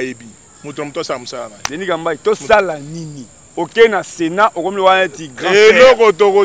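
A man talking, over a steady high-pitched chirring of crickets that goes on without a break.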